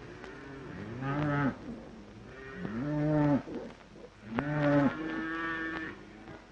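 Stockyard cattle mooing: three long, arching moos one after another, then a shorter held call near the end.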